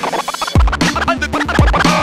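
Hip hop track with a DJ scratching a record over the beat: quick short scratch strokes between kick drum hits, the kick coming back in about half a second in.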